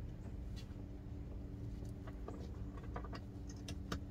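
Faint scattered clicks and light rustles of a popup camper's bunk-end canvas and its fittings being handled by hand, a few small clicks clustered near the end, over a steady low hum.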